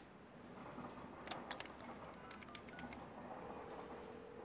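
Faint clicks and short beeps of a corded desk telephone's keypad being dialled, a quick run of presses about a second in, over faint background music. A steady tone of the line comes in near the end.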